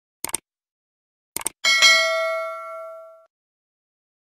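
Sound effects for an animated subscribe button: a quick double click about a quarter second in and another pair of clicks near a second and a half, then a bright bell ding that rings out and fades over about a second and a half.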